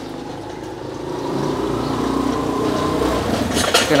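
A motor vehicle's engine running and growing louder over a few seconds, as if passing by, with a brief rustle near the end.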